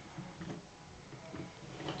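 A few faint light clicks from a wooden toy train being pushed along wooden track, in a quiet room.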